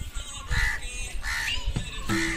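A crow cawing twice, the two calls under a second apart.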